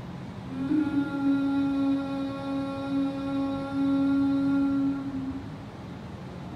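A woman's single long, steady hum on one pitch, the out-breath of Bhramari pranayama (humming bee breath) done with the ears closed; it starts about half a second in and stops about five seconds in.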